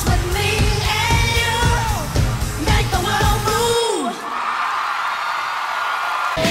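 Live pop song: a woman's lead vocal over a heavy electronic dance beat, ending about four seconds in on a long falling note. The beat then drops out, leaving a steady haze of crowd cheering and screaming.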